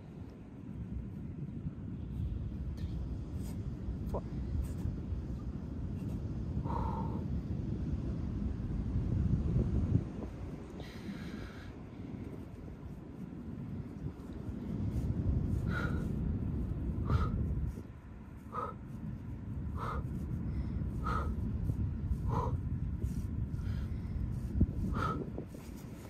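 A woman breathing hard with exertion, pushing out short breaths about once every second and a half in the second half, one with each kick of a repeated glute kickback, over a steady rumble of wind on the microphone.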